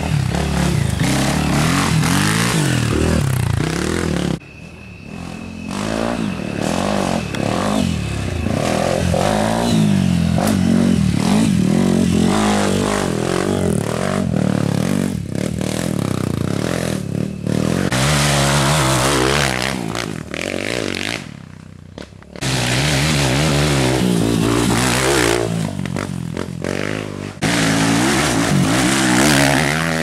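Enduro dirt bikes revving hard on a dirt trail, engine pitch rising and falling again and again as riders accelerate and shift through the gears. Riders pass one after another, and the sound breaks off abruptly a few times between passes.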